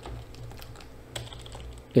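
A few faint clicks at a computer keyboard, the clearest about a second in, over a low steady hum.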